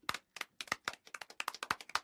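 A quick, irregular run of sharp pops from the sound effect of an animated logo sting, about seven a second, each one short with near silence between them.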